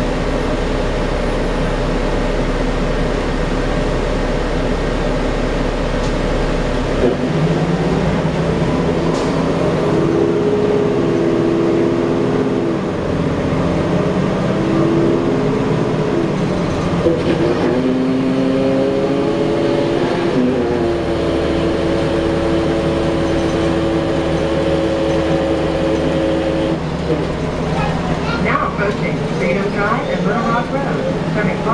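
Cummins ISL diesel engine of a 2010 Gillig Low Floor bus, heard from inside the cabin. It idles with a steady low hum, then pulls away about seven seconds in, its note stepping up several times as the Allison automatic shifts. It holds a steady cruising note and drops away a few seconds before the end.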